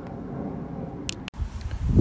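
Faint outdoor background noise with a brief hiss about a second in, then, after a sudden break, a low fluttering rumble of wind on the microphone.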